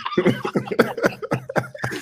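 Men laughing, a quick run of short, breathy laugh pulses, several a second.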